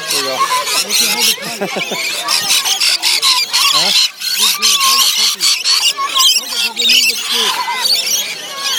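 A crowd of rainbow lorikeets screeching and chattering without a break while they squabble over a feeding dish. The calls are loud, harsh and high-pitched.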